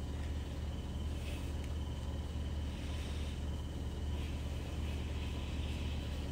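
Steady low background hum with a faint thin high tone and light hiss, no speech.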